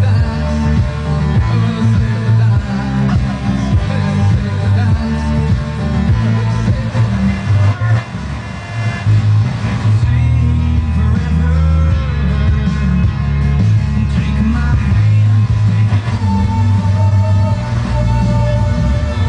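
Rock music with a singing voice played loud, with heavy bass from a Velodyne VX-10B 10-inch powered subwoofer.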